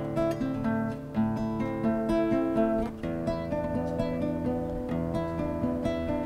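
Nylon-string classical guitar played at a brisk pace, a repeating pattern of plucked bass notes and chords that makes up a milonga accompaniment.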